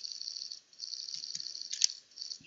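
A steady high hiss of background noise with a faint fluttering texture. It dips out briefly about half a second in, and there is one short click near the end.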